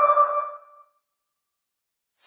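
The tail of an electronic logo sting: a held synth chord of pure tones ringing out and fading away in under a second.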